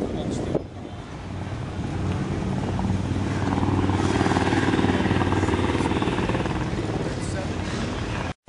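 A motor vehicle's engine running, growing louder over the first few seconds and then slowly fading, with background voices.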